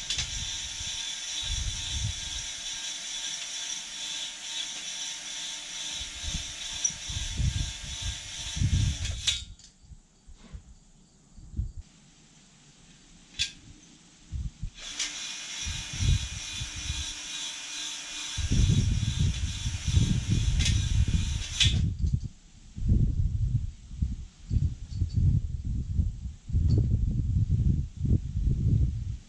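Power drill spinning a cylinder hone in a bore of a Honda J32A3 V6 block, its stones scraping the WD-40-wetted cylinder wall as it is stroked up and down. It runs for about nine seconds, stops, then runs again for about seven seconds, with low knocks and rumbles around it.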